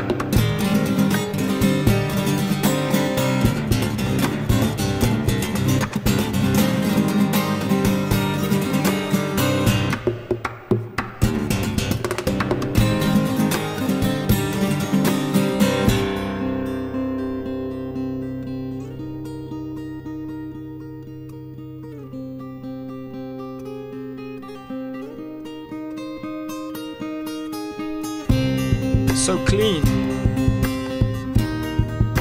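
Solo acoustic guitar played fingerstyle, busy and percussive with many sharp strokes. About halfway through it drops to slower, ringing held notes, and the busy playing returns near the end.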